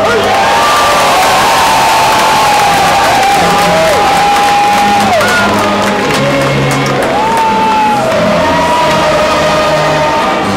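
Brass band music with long held notes and sustained low chords, over crowd noise and cheering from a stadium crowd.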